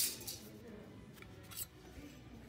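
Plastic clothes hangers scraping and clicking along a metal clothing rack as garments are pushed aside: a loud burst of scraping at the start and a shorter one about a second and a half in.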